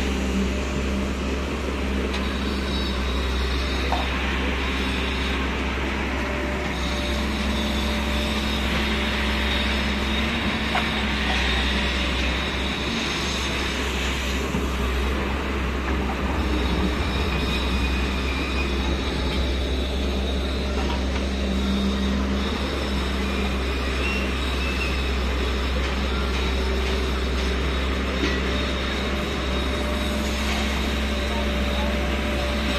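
JCB tracked excavator running steadily as it digs and lifts soil and rock: its diesel engine and hydraulics working under load.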